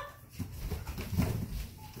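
A corgi jumping between two leather sofas: soft thuds and scuffling of paws landing on the leather, the heaviest a little past halfway.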